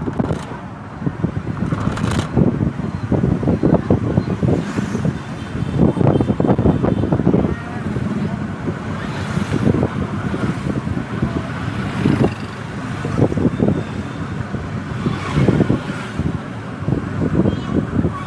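Wind buffeting the microphone in uneven gusts while riding through town street traffic, with the engines of surrounding motorbikes and cars underneath.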